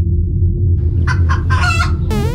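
A rooster crowing: a few short notes about two-thirds of a second in, then a longer final note near the end. A steady low rumble runs underneath.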